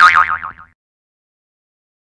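A cartoon 'boing' sound effect: a springy, wobbling tone that falls and fades out within the first second.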